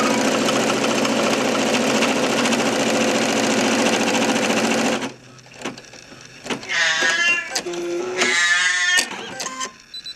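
Brother computerised embroidery machine stitching at speed, a steady rapid needle chatter that cuts off suddenly about halfway through. After it come a few scattered clicks and two short, wavering, high-pitched sounds.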